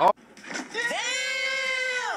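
A man's voice drawing out one long, nasal, held-pitch exclamation that slides up at the start and falls away at the end, a comedic reaction sound clip edited in.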